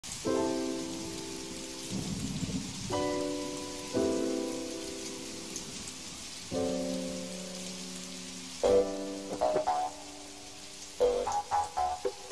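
A steady rain sound effect under soft music of held chords that start afresh every few seconds, turning to shorter separate notes about nine seconds in.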